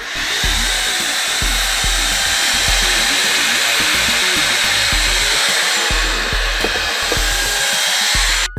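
Cordless handheld vacuum cleaner running steadily, a loud rushing whoosh with a high motor whine.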